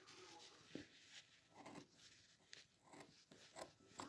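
Near silence broken by a few faint, irregular snips of scissors cutting through fleece fabric.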